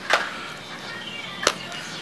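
Rustling as a small black fabric filter pouch is handled and opened, with one sharp click about one and a half seconds in.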